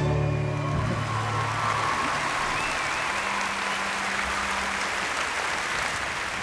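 The last note of a song dies away in the first second or two, then applause carries on steadily.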